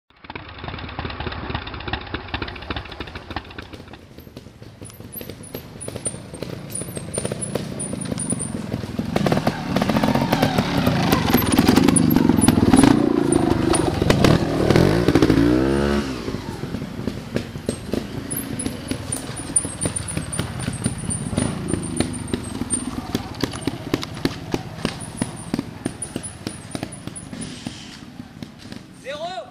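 Trial motorcycle engines blipping and revving up and down as riders pick their way over rocks and roots, with the sound changing abruptly at the cuts between clips. The loudest stretch is the revving about halfway through.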